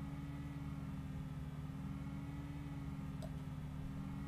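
Steady low hum of room tone with one faint click about three seconds in.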